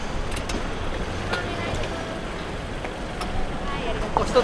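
City street traffic noise: a steady low rumble of vehicles, with a few light clicks scattered through it.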